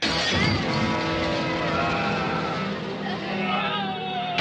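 Dramatic orchestral horror film score starting abruptly and loudly with a heavy hit, then a sustained dissonant chord of many instruments with wavering high lines over it.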